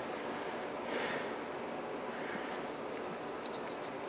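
Quiet steady room hiss with a couple of faint soft rustles, as from hands handling small parts.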